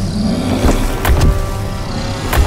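Sound effects for a giant animated dinosaur stomping: several heavy thuds over a low rumble, with background music underneath.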